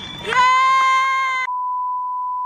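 Television test-pattern sound effect: a loud, buzzy tone with many overtones starts about a third of a second in and gives way, about halfway through, to a steady pure high-pitched beep like the one that goes with colour bars.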